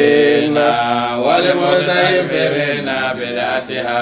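Men's voices chanting a religious refrain, drawing out long held notes.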